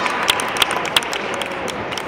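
Scattered, irregular handclaps from spectators over the low murmur of a crowd.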